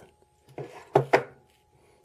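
Two short bits of a man's voice about half a second and a second in, with quiet between.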